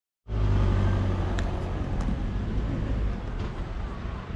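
Street traffic: a steady low rumble of road vehicles with a few light sharp ticks, easing slightly near the end.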